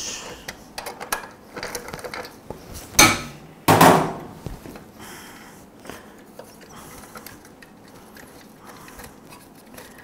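Steel wrench clicking and clanking on the muffler bolts of a lawnmower engine as the bolts are worked loose, with two loud metallic clanks about three and four seconds in, the second ringing briefly, then lighter scattered clicks. The bolts are rusted from the exhaust heat.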